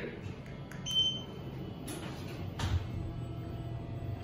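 A short electronic beep from a Schindler 3300 elevator's car panel as a floor button is pressed, about a second in, with a few light clicks and knocks around it over the cab's steady low hum.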